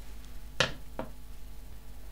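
Two light clicks as a pair of metal-bladed kitchen scissors is set down on a wooden table. The first click is the louder.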